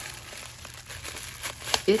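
Plastic bubble wrap crinkling and rustling as it is pulled open by hand, with scattered small crackles that grow louder near the end.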